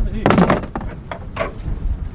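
Cut branches and brush being handled and thrown onto a brush pile: a loud rustling crash early on, then a few lighter cracks of twigs. Wind buffets the microphone with a low rumble throughout.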